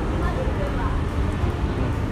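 Steady low rumble of traffic on the toll road overhead, with faint voices in the background.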